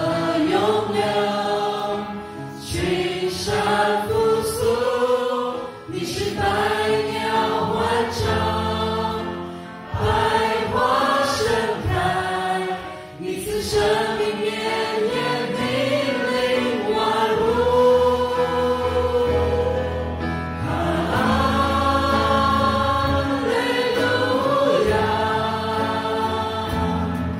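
A live worship band plays a praise song: several singers at microphones with guitar and low sustained accompaniment. The song moves in phrases of a few seconds, with short breaks between lines.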